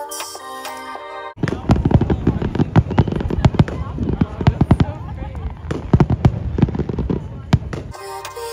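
Background music for about the first second and a half, then a fireworks display: rapid, irregular bangs and crackling shells going off, louder than the music, until the music comes back at the end.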